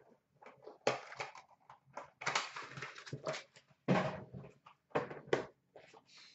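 Hands handling small cardboard hockey card boxes and cards on a glass counter: a string of short knocks, scrapes and rustles, starting about a second in.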